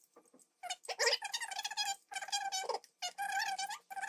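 Metal spoons stirring hot milk in glass mugs, the spoon rubbing the glass in a high, ringing squeal that comes in four long strokes of about a second each. The stirring dissolves a hot chocolate bomb that has not burst open.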